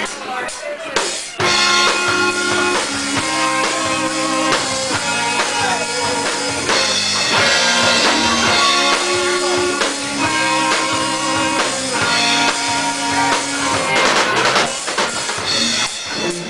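Live rock band's instrumental break: electric guitars playing chords and lines over a drum kit, with the full band coming in about a second and a half in.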